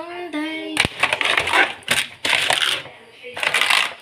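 Plastic refill pouches and bottles of dishwashing liquid crinkling and knocking together as a hand rummages through them on a cabinet shelf, in three noisy bouts with sharp clicks.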